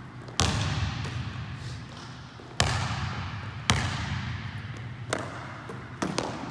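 A basketball bouncing and striking hard surfaces in a large gym: four sharp hits, one to two seconds apart, each ringing on in the hall's long echo.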